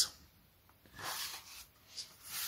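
Soft papery rustle of a stack of scratch cards being handled and shuffled into order, one short brush about a second in and a small tick near the end.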